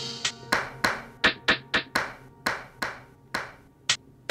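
Yamaha Montage M6 synthesizer playing a percussion sound from the keys: a run of short, sharp hits, about three to four a second in an uneven rhythm, each with a brief ringing tail.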